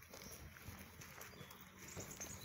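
Near silence: faint outdoor background with a few soft, scattered clicks.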